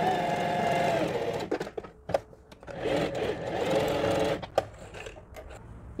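Singer Facilita Pro 4411 domestic sewing machine running a straight stitch, in two spells of about a second and a half each with a short pause between, then stopping with a few light clicks.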